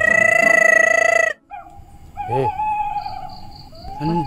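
An advertising jingle ends on a loud held synth chord that cuts off sharply after about a second. Then, more quietly, a long steady tone runs under a man's brief exclamation, with a faint, repeated high chirp near the end.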